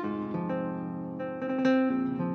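Instrumental intro of a Brazilian funk (baile funk) track: a melody of separate plucked-string notes, guitar-like, with no vocals yet.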